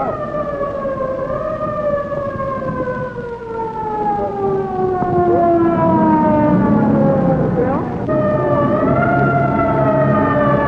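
A siren wailing: its pitch falls slowly over about eight seconds, swings up briefly near the end, then falls again. A lower jumble of voices or crowd noise joins about halfway through.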